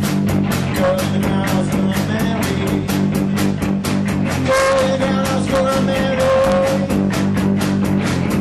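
Live rock band playing: electric guitar over a fast, steady drumbeat, with a long held note coming in about halfway through.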